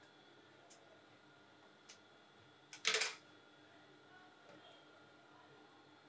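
Cloth being handled by hand on a sewing table: quiet except for a couple of faint clicks and one short, loud rustle about three seconds in, over a faint steady hum.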